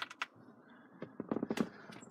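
A few faint clicks and taps: a couple right at the start, then a quick cluster of them about a second and a half in.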